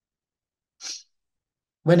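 A single short, sharp intake of breath about a second in, between stretches of dead silence.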